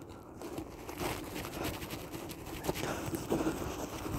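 Nylon webbing being worked through a slit in a plastic quick-release buckle with needle-nose pliers, against a canvas rucksack. It makes a continuous run of soft scrapes, rustles and small plastic clicks.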